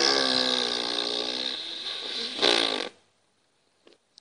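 A long, drawn-out fart noise at a steady pitch, ending in a short louder blast about two and a half seconds in.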